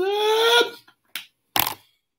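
A man's drawn-out shouted call of a name, held on one vowel and rising slightly in pitch, which breaks off about half a second in. It is followed by two short sounds about a second later.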